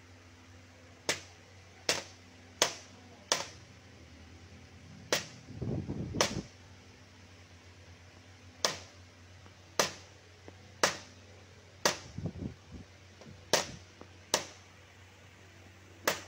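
Light hammer taps on the metal crimp edge of a Proton Saga radiator's header plate, folding it down onto the plastic end tank to clamp the tank back on. About a dozen sharp single taps, roughly a second apart, with brief scraping from the radiator being handled in between.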